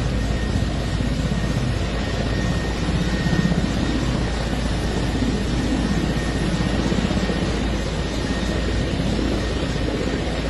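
Military helicopter running on the ground, its engine and rotor making a steady low beat.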